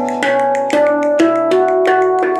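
Zen handpan tuned to B Celtic minor, struck with the fingers in a quick, even run of notes, about four strikes a second, each note ringing on under the next.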